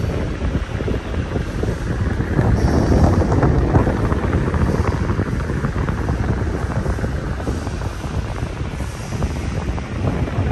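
Air buffeting the camera's microphone, a loud, steady, low rumble that swells a little around the third and fourth seconds.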